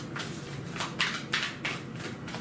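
A deck of oracle cards being shuffled by hand, the cards slapping and flicking against each other in a quick, uneven run of soft slaps, several a second.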